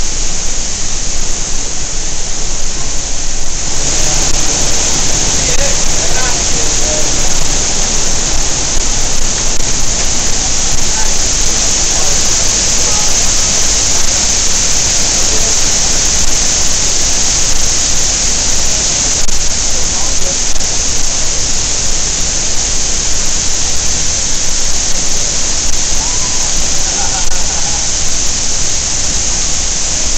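Huang Guo Shu waterfall: a loud, steady rush of a large volume of falling water crashing into its gorge, growing louder and brighter about four seconds in.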